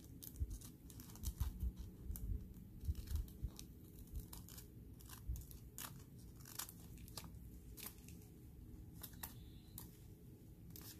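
Scissors snipping through a thin, crinkly sheet of mylar film, with irregular sharp snips and crackles of the plastic. A few dull bumps come in the first few seconds.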